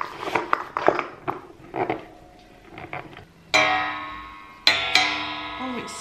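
A metal spring-loaded desk phone-stand arm being handled and adjusted: clicks and knocks, then about halfway two sudden ringing twangs a second apart that die away.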